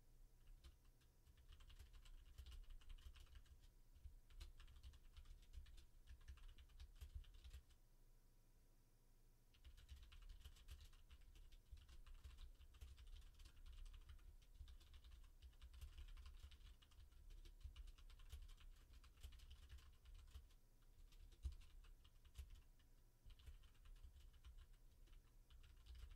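Faint typing on a computer keyboard: quick, irregular key clicks, with a short pause about eight seconds in.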